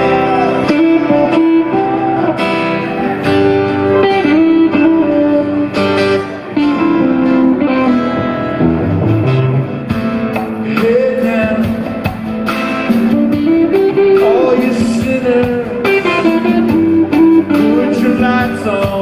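Live rock band playing an instrumental passage: an electric guitar lead with bent, sliding notes over rhythm guitar, drums and percussion.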